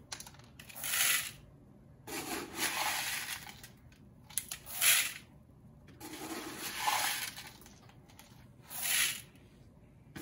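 Small plastic pieces scooped by cup from one plastic bucket and poured into another hanging bucket. There are about five short rattling pours, roughly one every two seconds, with quiet scooping between them.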